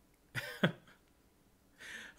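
A man coughs once, short and sharp, then draws a breath near the end.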